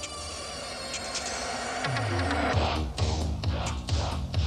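Soundtrack music; from about two seconds in, deep bass notes slide down in pitch again and again.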